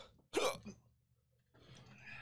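A man hawking and spitting into a plastic cup, clearing a burning-hot pepper chip from his mouth: one short, sharp spit about a third of a second in.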